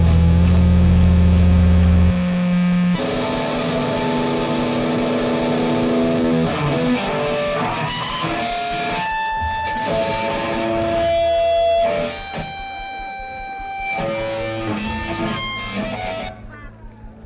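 Electric guitar feeding back through an amplifier: long held tones that shift in pitch with no beat. The heavy low notes cut out about two seconds in.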